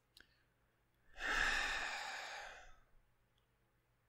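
A man's long sigh into a close microphone, starting about a second in, loudest at the start and fading away over under two seconds.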